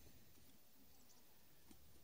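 Near silence: faint outdoor background with a single faint click near the end.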